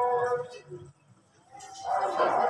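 Evening (Maghrib) call to prayer sung over a mosque loudspeaker: a long held note fades out about half a second in, and after a short pause a new drawn-out phrase swells up near the end.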